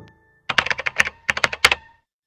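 Computer keyboard typing: two quick runs of key clicks, about a dozen in all, with a short pause between.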